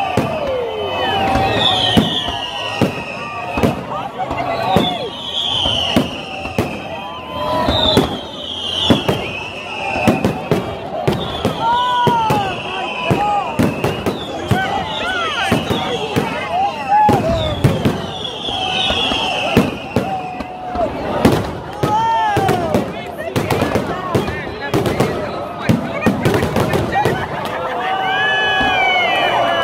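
Fireworks display: a steady run of bangs and crackling bursts, with high falling whistles repeating every second or two.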